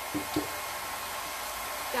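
Handheld hot-air blower running steadily, drying freshly sprayed gold paint, with a brief tap under half a second in.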